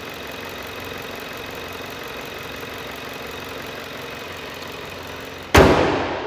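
2018 Jaguar F-Pace's 2.0-litre turbocharged four-cylinder engine idling steadily and smoothly with the hood open, then the hood slammed shut about five and a half seconds in with one loud thump.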